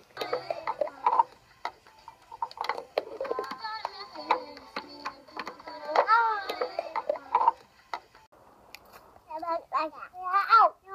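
Young children's voices talking and babbling in high, wavering tones, with a few sharp clicks in between.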